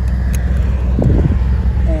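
1951 MG TD's four-cylinder engine running as the car drives along, heard as a steady low rumble with wind and road noise of the open roadster.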